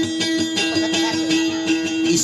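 Music with guitar strumming in a steady rhythm under a long held note.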